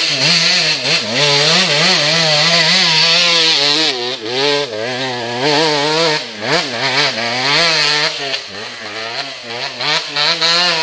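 Off-road motorcycle engine running under changing throttle, its pitch rising and falling continuously, with a quick drop and pick-up about six and a half seconds in.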